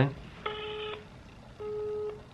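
Smartphone on speakerphone sounding a busy tone: two steady half-second beeps about a second apart. The tone signals that the call has been cut off, which the caller takes as being hung up on.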